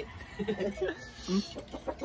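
Domestic chickens clucking a few times.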